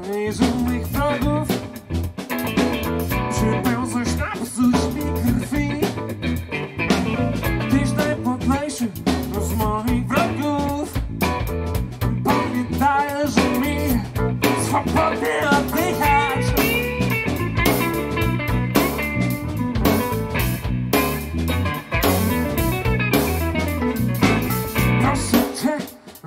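Live band playing a bluesy jazz-funk passage: electric guitar, bass guitar, keyboards and drum kit.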